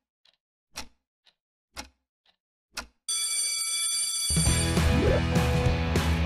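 Clock tick-tock, alternating louder and softer ticks about twice a second, then an alarm clock ringing about three seconds in. Background music with a steady beat comes in over the ringing shortly after.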